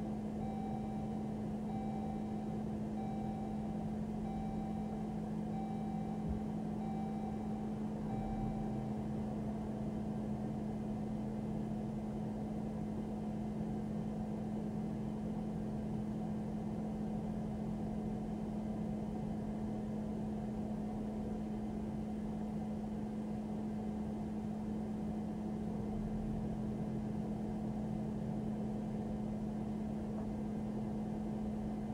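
A police patrol car idling with a steady low hum, heard from inside the car, with a repeating electronic warning chime sounding about once a second for the first nine seconds and then stopping.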